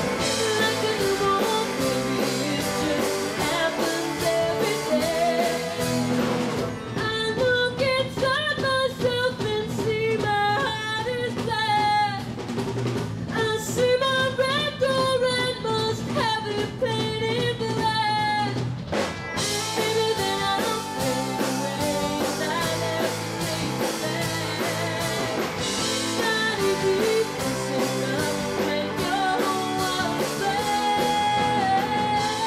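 A singer performing a song with a live rock band of drums and electric guitar. About a quarter of the way in the drums fall away to a quieter passage of long held vocal notes over sustained backing, and the full band comes back in about two-thirds of the way through.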